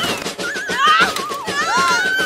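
A cartoon character's high-pitched, wavering cry, a run of several warbling wails that dip and rise in pitch.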